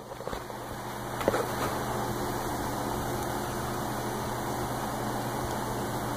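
Steady low hum of an electric fan running in the room, with a sharp click at the start and a knock about a second in as the alternator pulley is handled.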